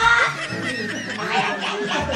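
A group of young people laughing and snickering together, a loud voice at the very start trailing down in pitch before it breaks into choppy, overlapping laughter.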